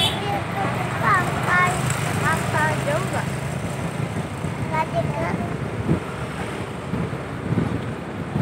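Motorcycle engine running steadily with wind and road noise while riding. A high-pitched voice calls out briefly a few times.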